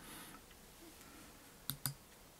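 Two quick, sharp clicks close together near the end, over faint room tone: a presentation clicker or mouse button advancing the slide.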